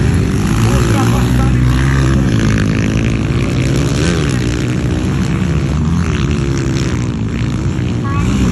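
230cc motocross dirt bike engines running close by, the revs rising and falling several times.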